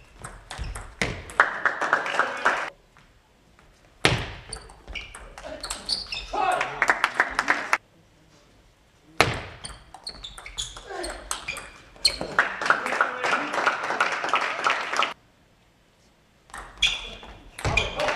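Table tennis ball clicking back and forth off bats and table in quick rallies. Each rally is followed by a couple of seconds of spectators clapping and shouting, with short near-silent gaps between rallies.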